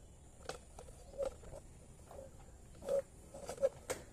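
Cello Kleeno spin mop's microfiber head pushed over wet ceramic floor tiles to soak up rainwater, giving short, irregular squeaks with a few sharp knocks in between.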